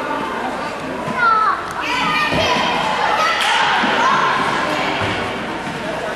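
Children shouting and calling out during an indoor soccer game, the voices ringing around a gymnasium. A high shout comes about a second in, and a ball thuds a little over two seconds in.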